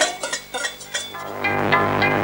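Clattering and clinking from homemade percussion instruments being shaken and banged. About a second in, theme music with regular percussion starts and takes over.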